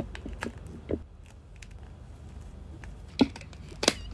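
Plastic clicks of a laptop power cord being connected: a few light clicks in the first second as the mains cord is pushed into the power adapter brick, then two sharp clicks near the end, the second the loudest, as the plug is pushed into a wall socket.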